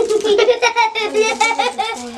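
A young boy laughing loudly in a quick, even run of bursts.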